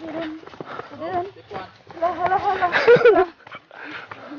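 Indistinct people's voices talking and exclaiming, with a louder, higher-pitched vocal outburst about two to three seconds in.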